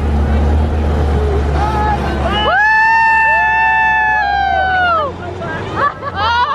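A low, steady rumble from the Amphicar's engine as the car rolls off the launch ramp into the water. About halfway through, several voices let out long, high whoops that rise and fall, lasting two to three seconds.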